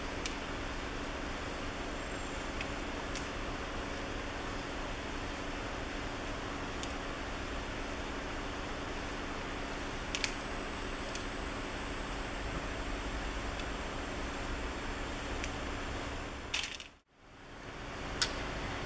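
Steady background hiss with a faint low hum, even in level throughout, with a few faint clicks; no distinct rasping strokes stand out. The sound drops out abruptly near the end.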